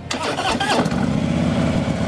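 A 2015 Harley-Davidson Tri Glide Ultra's Twin-Cooled High Output Twin Cam 103 V-twin starts up suddenly and settles into a steady idle about a second in.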